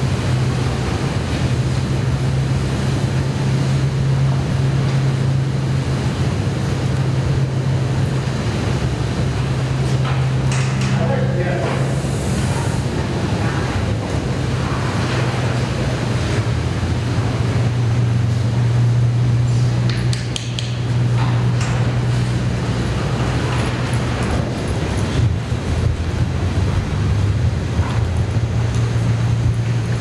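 Steady low-pitched mechanical hum, dipping briefly about twenty seconds in.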